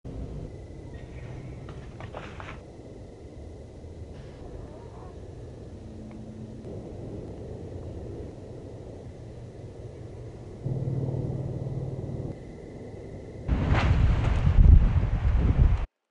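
Thunder rumbling low, stepping up in level about two-thirds of the way through, then a loud peal in the last two seconds that cuts off suddenly.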